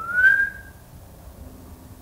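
A single short whistle, gliding up in pitch and then holding briefly, about half a second long, followed by a faint steady hum.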